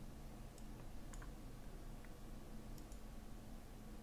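Quiet room tone with a low steady hum and a few faint, scattered clicks.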